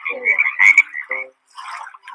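Frog croaking sound effect in a children's song recording: a quick run of short repeated croaks that stops just over a second in, followed by a brief burst of noise.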